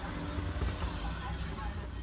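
Steady low rumble of the car's engine idling, heard inside the cabin, with faint voices in the background.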